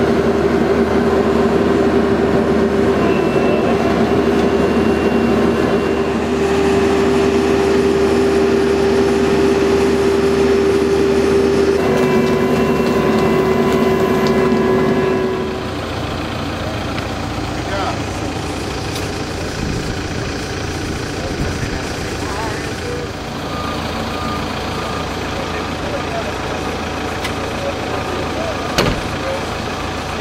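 Volvo BL70B backhoe loader working its digging arm, its engine running steadily with a loud steady whine. About halfway through the sound cuts to a quieter machine background with faint short beeps.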